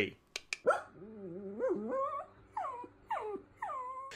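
Whining, whimpering vocal sounds: a wavering, rising whine, then several short cries that slide down in pitch.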